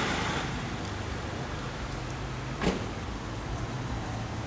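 Steady low rumble of city street traffic, with one short sharp sound a little past halfway.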